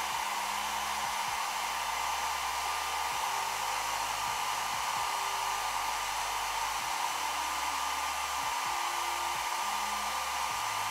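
Hand-held blow dryer running steadily with a thin, even whine, blowing on the lace of a lace frontal wig to dry the sprayed-on product and lock the lace down.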